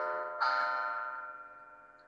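A bell-like chime, struck about half a second in, that rings out with several steady tones and fades away.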